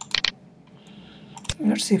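A few sharp computer mouse clicks in quick succession right at the start, then a man starts to speak near the end.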